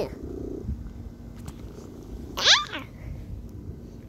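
Domestic cat purring close to the microphone, with one short, high cry that rises and falls about two and a half seconds in.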